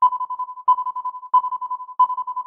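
An electronic intro sound effect: a single high tone pulsing rapidly like a phone ringtone, the pattern restarting with a sharp attack about every two-thirds of a second, three times.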